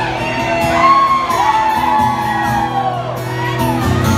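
Audience whooping and shouting, several voices at once with pitches that rise and fall, over a steadily played acoustic guitar.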